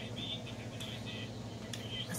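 Quiet sipping and swallowing from a plastic drink bottle, over a steady low hum.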